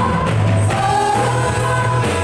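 Live worship music: women singing together into microphones over keyboard and band accompaniment with a steady, strong bass.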